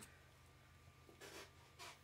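Faint snips of small scissors cutting frayed fabric threads at the edge of a fabric-wrapped tumbler: two short, soft cuts, one a little over a second in and one near the end.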